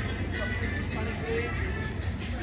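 Busy night-market street ambience: music playing, people talking and road traffic, all mixed together with no single sound standing out.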